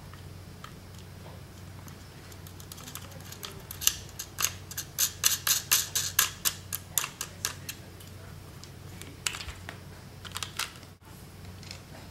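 A run of light, quick clicks, about three or four a second, then a few more after a pause, from fingers threading a small nut onto a long screw through the plate of a plastic toy-robot kit.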